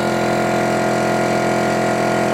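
Garage piston air compressor with receiver tank running steadily as it pumps the pressure back up, under the hiss of a compressed-air paint spray gun misting liquid.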